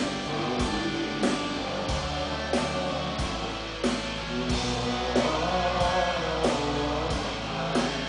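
A rock band playing live, heard from the crowd: electric guitar, keyboards and a steady drum beat, with a male singer's voice coming in over the band.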